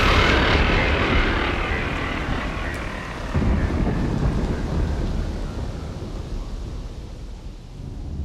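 Electronic background music in a breakdown: a roaring wash of noise that slowly fades away, with a low rumble swelling up again about three and a half seconds in.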